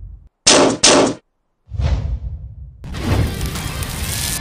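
Two loud sci-fi blaster-shot sound effects in quick succession about half a second in, then a short low rushing sound. From about three seconds a dense, noisy mix of effects takes over.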